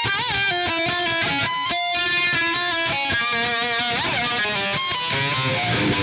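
Eight-string electric violin playing a melodic improvised line of held notes, with a pitch slide about four seconds in and a lower repeating part coming in near the end.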